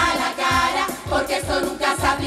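A Canarian carnival murga, a large group of women, singing in unison as a chorus over a steady low drum beat of about two to three beats a second.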